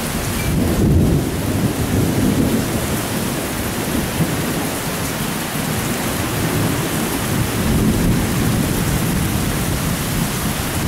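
Heavy rain pouring steadily on a palm-thatch roof, heard from underneath, with a low rumble running through it.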